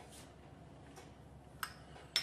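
Quiet kitchen room tone with a low steady hum, broken by one short, light click about one and a half seconds in.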